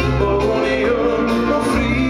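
A dansband playing live through a PA, with a male lead voice singing over bass, guitar and drums, heard from within the audience.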